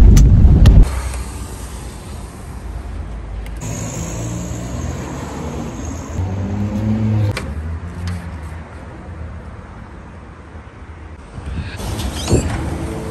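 A car engine and road traffic noise: a loud low rumble in the first second, then a lower steady hum with an engine note that swells and fades near the middle.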